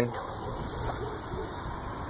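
Steady low background hiss with no distinct sound events.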